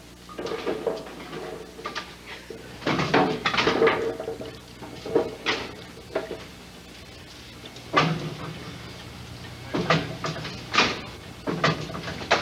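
Bowling-centre ambience: a handful of separate knocks and clatters spaced a second or more apart, over a steady low hum.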